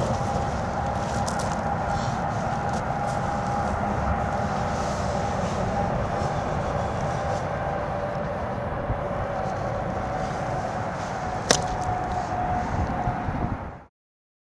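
Steady rumble of road traffic on a highway bridge, with a constant hum over it. A single sharp click comes about eleven and a half seconds in, and the sound cuts off abruptly just before the end.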